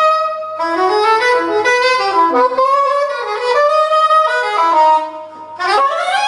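Soprano saxophone playing a fast, winding jazz line of many short notes; near the end it drops away for a moment, then slides quickly upward into a held note.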